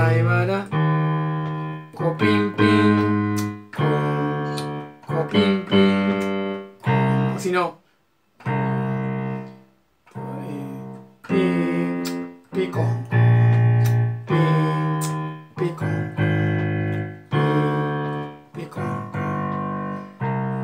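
Yamaha digital piano playing a slow run of seventh chords, a single bass note in the left hand under two notes in the right, each chord struck and left to fade. The playing breaks off briefly twice a little before halfway.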